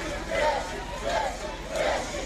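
A roadside crowd, many voices calling and shouting at once, in repeated swells.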